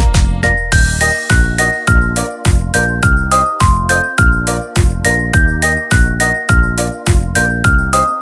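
Instrumental break of a bouncy children's song: a melody of short high notes over bass and a steady beat of about two strokes a second, with no singing.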